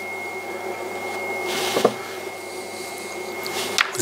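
Electric pottery wheel running steadily, its motor giving a low hum with a high, steady whine. A brief hiss comes about halfway through, and the whine cuts off just before the end.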